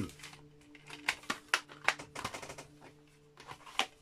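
Small clicks, taps and light rustles of a Blu-ray collector's edition and its sealed art cards being handled, spread unevenly through the few seconds over a faint low hum.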